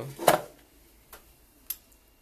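A metal spoon clinks sharply once against a glass bowl while scooping out muffin batter, followed by two faint ticks.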